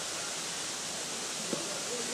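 Steady rush of running water from a nearby stream, an even hiss with no breaks.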